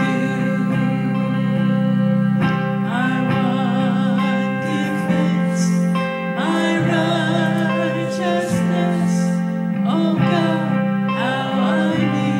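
A live worship song: a woman sings lead into a microphone, holding long notes with vibrato, and a man sings along. Electric guitar accompanies them over sustained low chords. New sung phrases begin about two and a half, six and a half, and ten seconds in.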